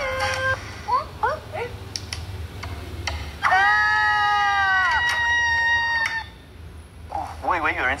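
Radio station promo audio with sound effects: a short steady tone, a few quick rising chirps, then a long held vocal note that bends down at its end, followed by a steady tone. Near the end comes a wavering, quavering voice.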